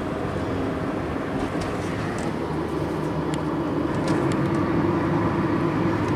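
A car driving, heard from inside its cabin: steady engine and road noise, growing a little louder toward the end.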